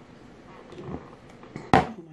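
Quiet room with a few faint soft sounds, then near the end a sudden loud, breathy exhale from a woman as she starts to exclaim "oh my" after a mouthful of drink.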